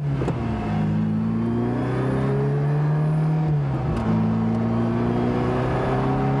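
Ferrari engine pulling under acceleration, heard from inside the cabin. Its pitch climbs steadily, drops at an upshift about three and a half seconds in, then climbs again.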